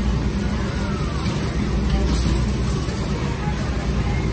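Warehouse store background: a steady low rumble with faint, distant voices.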